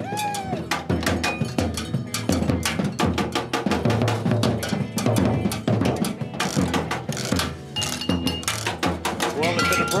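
A homemade street percussion rig of drums, a steel pan and metal pots and buckets being banged with sticks in a fast, steady beat. Voices shout and cheer over it.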